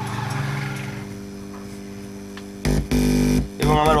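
Microlab subwoofer speaker system putting out a steady mains hum, with hiss that fades over the first second. A much louder low buzz breaks in for under a second near the end. The hum is the noise fault of the amplifier under repair.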